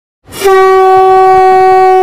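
A conch shell (shankh) blown in one long, steady note, starting about a quarter second in.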